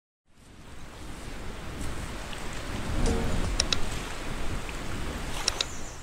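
A steady wash of water, like small waves lapping on a shore, fading in over the first second. A few short, sharp high sounds stand out about halfway through and again near the end.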